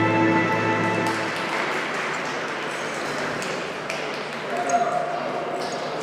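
Ice-dance program music ends on a held chord that fades out about a second in. It is followed by steady crowd noise in the rink, with many small claps and some voices.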